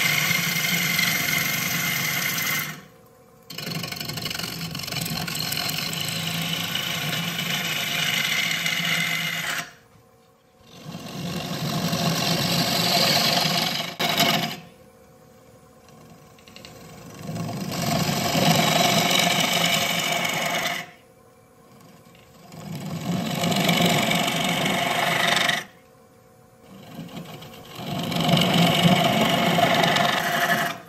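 Bowl gouge cutting the inside of a spinning yew-and-mahogany bowl blank on a wood lathe, a steady rough shaving sound in six passes of a few seconds each. Between passes the tool comes off the wood and only the lathe's faint hum is left.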